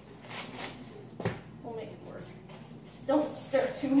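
People talking over light kitchen handling noise, with one sharp knock about a second in.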